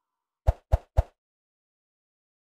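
Three short, punchy pop sound effects in quick succession, about a quarter second apart, each with a low thud, from an animated logo intro.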